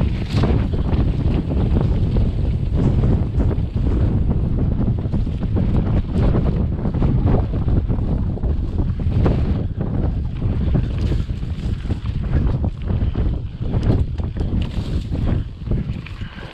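Wind buffeting an action camera's microphone as a mountain bike rolls over a rough dirt singletrack, with a steady low rumble and frequent knocks and rattles from the bike over the bumpy ground.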